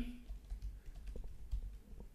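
Faint typing on a computer keyboard: a short run of soft key clicks.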